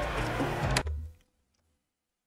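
Background music from a fight compilation video that stops abruptly with a sharp click a little under a second in, as the video is paused; dead silence follows.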